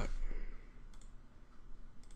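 A single computer mouse click about a second in, over faint room noise.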